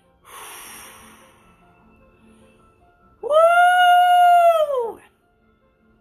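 A short breathy exhale, then a single long, high-pitched held vocal note of nearly two seconds, steady in pitch and sagging as it ends.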